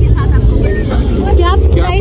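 People talking over the loud low bass of music playing through loudspeakers.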